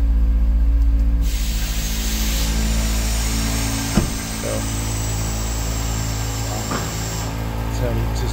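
2021 Ford F350 Super Duty's air suspension venting air as the truck drops from its raised height back to ride height: a steady hiss that starts about a second in and stops shortly before the end, over the engine idling. A single knock midway.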